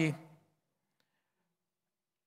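A man's speaking voice trailing off in the first half-second, then near silence with one faint click about a second in.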